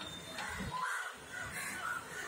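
Crows cawing, several calls in quick succession.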